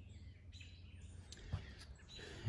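Faint outdoor ambience: a low steady rumble with faint bird chirps, and a couple of small clicks near the end.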